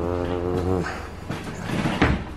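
Wheelchair wheels rolling over a tiled floor as it is pushed, a continuous low rumble. For the first second or so a steady held note sounds over it, then stops.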